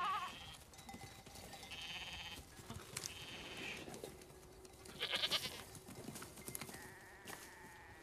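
A flock of goats bleating, several wavering calls one after another.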